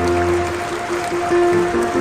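Live string orchestra playing, violins and lower strings carrying a quick-moving melody with notes changing several times a second, in a reverberant hall.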